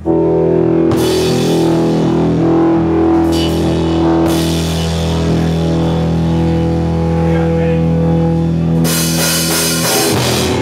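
Live punk rock band starting to play with a sudden loud entry: distorted electric guitars and bass holding ringing chords, with drum cymbal crashes about a second in, around four seconds, and near the end.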